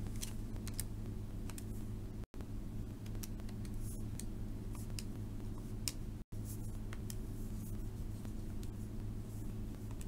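Buttons of a TI-84 Plus Silver Edition graphing calculator being pressed: a scattering of light, irregular clicks over a steady low electrical hum. The sound cuts out completely for an instant twice, about two seconds in and about six seconds in.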